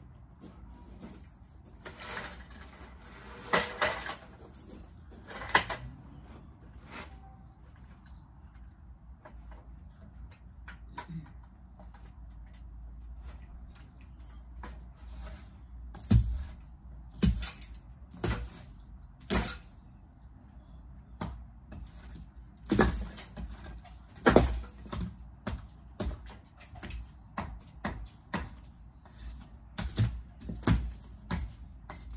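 Irregular knocks and clanks as an aluminium ladder is climbed and stood on against a brick wall. The knocks come in a few clusters early on, then heavier and more frequent from about halfway through.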